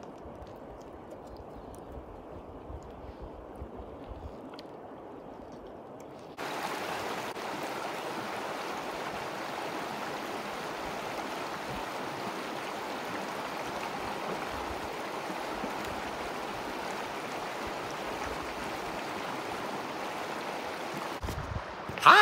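Shallow creek flowing over gravel and stones: a steady rushing water sound that starts suddenly about six seconds in, after a quieter stretch with a low rumble.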